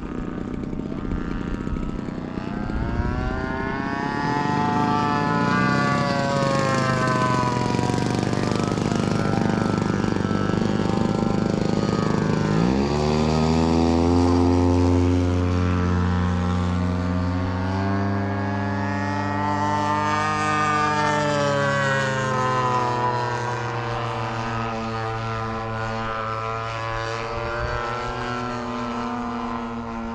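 Radio-controlled T-28 Trojan model airplane flying overhead, its engine and propeller note rising and falling in pitch as it manoeuvres. About 13 seconds in it passes close, and the pitch drops sharply to a deeper, louder note.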